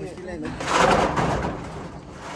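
Corrugated metal roofing sheet scraping as it is pushed up and slid onto a shed's roof frame: a rough scraping noise from about half a second in until near the end.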